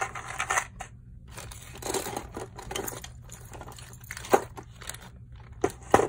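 Plastic zip-top bags crinkling and rustling as hands rummage through loose costume jewelry, with a few sharp clicks of metal pieces knocking together.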